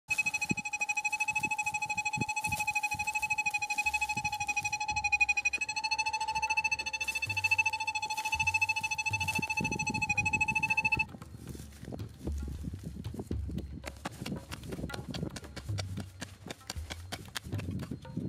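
Metal detector giving a steady, rapidly pulsing electronic target tone as its head is held over a spot, signalling metal in the ground; the pitch shifts slightly twice before the tone cuts off suddenly about eleven seconds in. After it come scattered clicks and low thumps of handling and steps on dry, stony ground.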